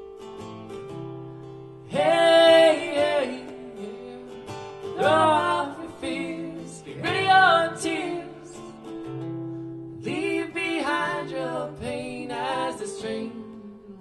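Live acoustic folk song: a strummed acoustic guitar with a man and a woman singing, in phrases separated by short guitar-only gaps.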